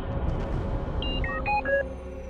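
Low rumble of a small spacecraft's descent thrusters as it lands, over background music. About a second in, a quick run of short electronic computer beeps at jumping pitches.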